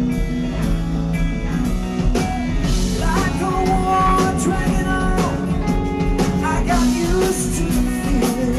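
A live rock band playing, with drum kit and guitars. A man's singing voice comes in about three seconds in.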